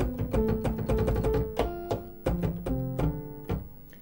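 Alpha Syntauri digital synthesizer, an Apple II with Mountain Computer sound cards, played on its velocity-sensitive keyboard with a piano preset. A quick run of struck notes and chords gets quieter and dies away near the end.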